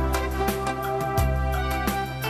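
Background music with steady sustained notes and a regular beat.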